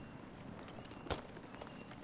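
A single sharp metallic clink about a second in, with a few lighter clicks around it: chain-mail armour shifting as it is handed from one man to another.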